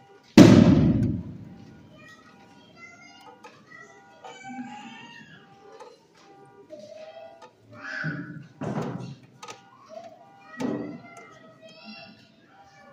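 A single loud bang about half a second in, echoing for about a second in a large hall, then softer thuds over background music and voices.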